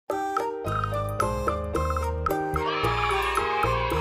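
Upbeat children's background music: short repeated pitched notes over a steady bass line. About halfway through, a wavering higher tone joins in.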